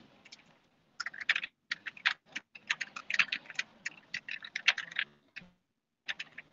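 Typing on a computer keyboard: irregular runs of key clicks from about a second in until shortly before the end.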